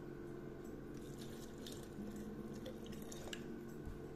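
Water poured from a plastic measuring jug into a glass jar of olive dressing: a faint, steady pour with a few small ticks, over a low background hum.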